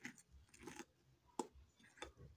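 Fork mixing flour in a ceramic bowl: faint scraping strokes through the flour, with one sharp clink of the fork against the bowl about one and a half seconds in.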